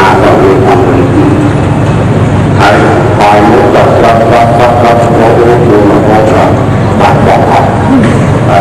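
An elderly Buddhist monk speaking into a microphone, his voice loud and rough over a steady low hum.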